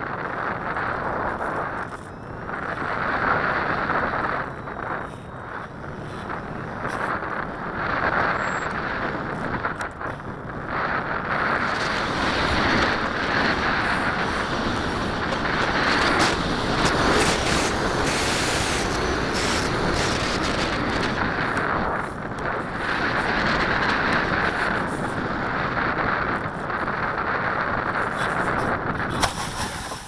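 Rushing airflow over the onboard camera of a radio-controlled glider in flight, with no motor running, swelling and easing as the plane swoops and turns. It dies away at the very end as the plane comes to rest on the grass.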